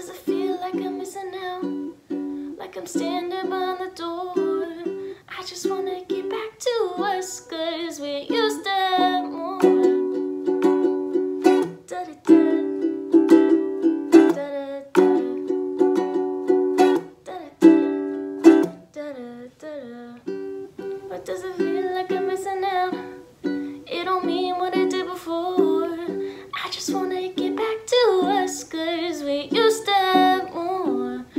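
A woman singing while strumming chords on a wooden ukulele, in a small room.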